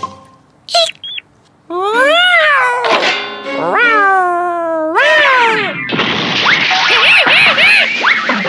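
A cartoon cat meowing: about four long drawn-out meows that rise and fall in pitch, starting a couple of seconds in. From about six seconds a loud, dense clamour of yowling takes over, a horrible sound.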